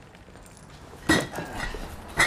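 Glass bottles clinking as a carton of drinks is set down: one sharp clatter about a second in, with a short ring, then a few softer clinks.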